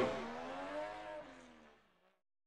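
A car engine sound effect in a TV title sting revs up and back down, fading out over nearly two seconds.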